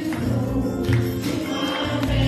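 Gospel praise team of several women singing a worship song together, over instrumental backing with bass and regular percussive beats.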